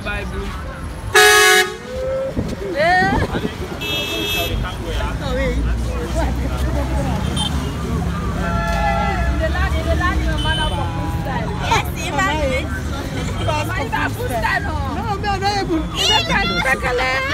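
A vehicle horn gives one short, loud toot about a second in, over the steady noise of street traffic.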